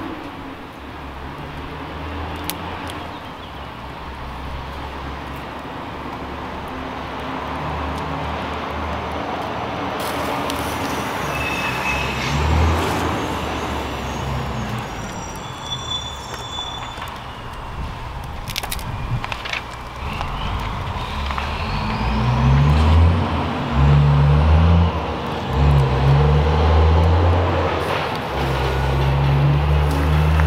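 Wood fire burning in a rocket stove under a boiling enamel teapot: a steady rushing noise with a low rumble that swells and grows louder over the last ten seconds, and a few sharp snaps from the sticks being fed in.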